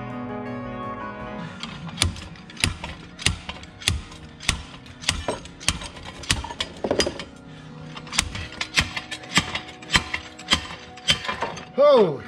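Slide hammer pulling a rear axle shaft: a regular run of sharp metallic clacks, about one and a half a second, after about the first second and a half of background music. The run ends in a louder clang with falling ringing as the shaft comes free of the axle housing.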